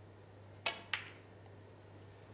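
Snooker cue tip striking the cue ball, then a second sharp click about a quarter of a second later as the cue ball clips a red on a thin cut.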